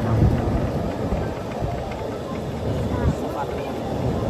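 Wind buffeting the microphone and rolling road noise from a moving open-sided passenger cart, with faint indistinct voices.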